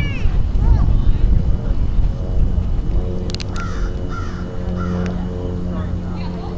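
Crow-like cawing: a couple of short calls near the start and three more about midway. Underneath are a low outdoor rumble and a steady droning hum in the second half.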